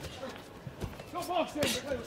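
Boxing gloves landing in a close-range exchange: a few short, dull thuds of punches, with brief shouts from ringside voices.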